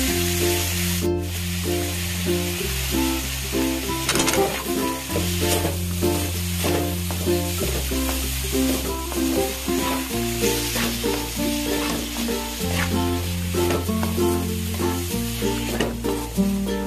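Liver pieces and fresh dill sizzling in oil in a metal pot, with a wooden spoon stirring and scraping a few times, under background music with a slow-changing bass line.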